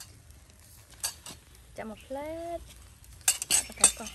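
Utensil clinking and scraping against a bowl and scallop shells as sauce is dipped out and brushed onto scallops on a charcoal grill. A single click comes about a second in, and a quick run of sharp clinks near the end is the loudest sound.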